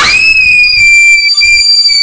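A voice screaming one long, piercing high note that sweeps up at the start and then holds steady.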